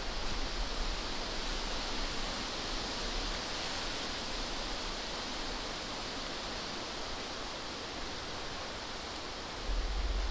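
Steady, even rushing outdoor ambience with no distinct events, the kind of noise made by wind in the trees, running water or light rain.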